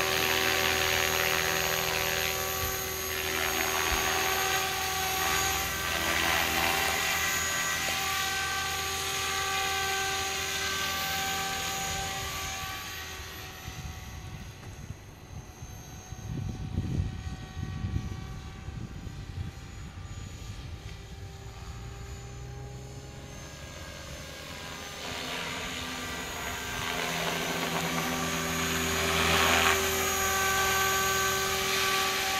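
Align T-Rex 500 electric radio-controlled helicopter flying, a steady high whine of its motor and gears over the buzz of the rotor blades, with the pitch gliding as it manoeuvres. It fades well down as the helicopter flies far off around the middle, then grows loud again as it passes close near the end.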